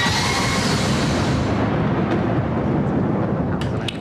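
Television show ident sound effect: a loud rushing sweep that hits just before and thins out over about two seconds, leaving a low rumble underneath.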